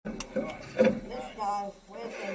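Muffled voices talking, with a couple of sharp clicks near the start.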